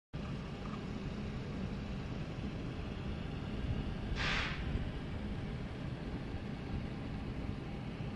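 Steady low outdoor rumble with a brief hiss about four seconds in.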